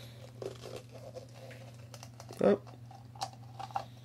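Faint clicks and rubbing of hard plastic toy parts being handled as a translucent plastic ball is pressed onto its mounting bar to snap it in place, over a steady low hum.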